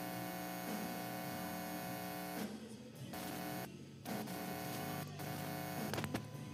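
Live worship band music: sustained chords held steady for a couple of seconds, then changing a few times, with no singing.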